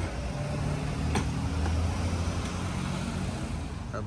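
Low, steady hum of a motor vehicle's engine, swelling a little in the middle, with one sharp knock about a second in.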